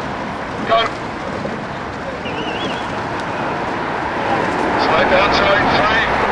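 A steady outdoor rushing noise with indistinct voices calling over it: a short shout about a second in, and more voices near the end.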